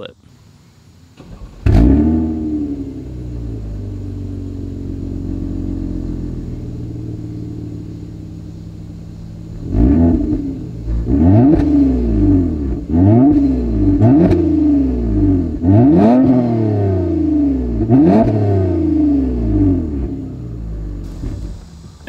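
2020 Toyota Avalon TRD's 3.5-litre V6 heard at its cat-back dual exhaust with stainless tips: a cold start with a brief loud flare about two seconds in, settling to a steady idle. From about ten seconds in the engine is blipped again and again, each rev rising and falling, before dropping back to idle near the end.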